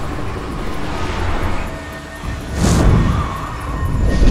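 Film score music over a rush of wind, swelling into a loud whoosh about two and a half seconds in as the wingsuit glider dives.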